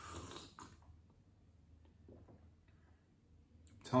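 A short noisy sip from a mug, about half a second long, followed by quiet room tone with a few faint small sounds; a man starts speaking near the end.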